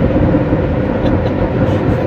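Steady road and engine noise inside a car's cabin while it drives at highway speed.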